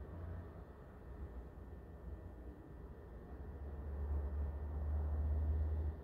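Low background rumble under a faint steady room hiss, swelling louder for a couple of seconds near the end.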